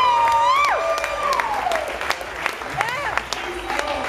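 Audience clapping and cheering, with whoops and whistles that glide up and down in pitch during the first two seconds, over scattered claps.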